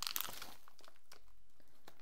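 Crinkling of a metallised anti-static bag being handled: a burst of crackles at the start, then a few faint ticks.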